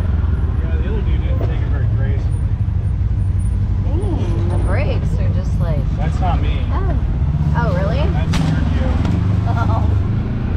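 Kawasaki KRX side-by-side's parallel-twin engine running at a steady low drone while crawling along a rough dirt trail, heard from on board the machine.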